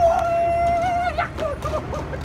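A drawn-out, high-pitched martial-arts shout ("hiyaaa") held on one pitch for about a second and ending in an upward flick, followed by a few short cries.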